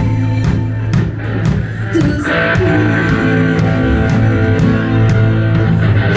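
A live rock band playing: electric guitar and bass over a drum kit keeping a steady beat. The band thins out briefly about a second in, and the guitar comes back fuller at about two seconds.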